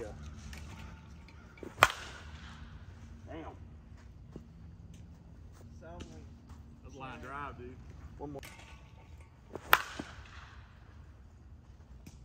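Two hits of a composite senior slowpitch softball bat (Short Porch Drip Johnny Dykes) on pitched softballs. Each is a sharp crack, the second about eight seconds after the first, with faint distant voices between.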